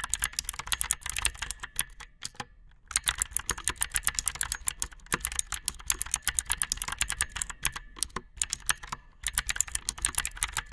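Fast typing on a mechanical keyboard with clicky blue switches: a rapid run of sharp key clicks, broken by a short pause a little after two seconds in and by brief gaps near the end.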